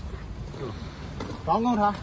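Low, steady rumbling noise, with a voice starting to speak about one and a half seconds in.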